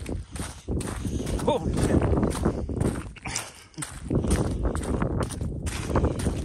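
Footsteps on lake ice, irregular steps, with wind buffeting the microphone.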